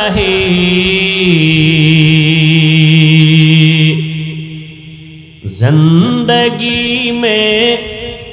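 A man's voice chanting a sermon line in a drawn-out melodic tune, holding one long low note for about three seconds. It fades away, then picks up again with a new rising phrase about five and a half seconds in.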